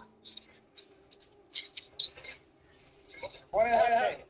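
A rider breathing hard into a voice-chat microphone during a hard effort: several short, sharp puffs of breath, then a loud, short voiced sound near the end with no clear words.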